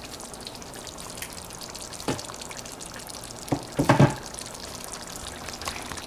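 Oxtail stew simmering in a pot, a steady low bubbling, with a few sharp knocks about two seconds in and a louder short cluster of them around four seconds.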